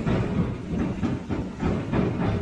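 Empty gooseneck flatbed trailer rattling and clanking as it is towed over a rutted dirt road, an irregular clatter of knocks a few times a second.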